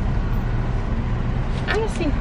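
Car engine idling, heard from inside the cabin as a steady low rumble with a faint hum. A voice begins near the end.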